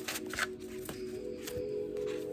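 Stack of paper index cards being thumbed through by hand: several quick flicks and rustles of card edges. Soft background music with long held tones runs underneath.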